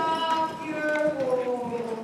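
Horse's hooves clip-clopping at an irregular beat, under a louder held, pitched sound with overtones that glides down in pitch about halfway through.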